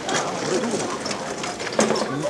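Pigeon cooing, low and rolling, over the chatter of people standing around.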